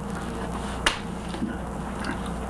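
A single sharp click a little under a second in, over a steady low hum and hiss.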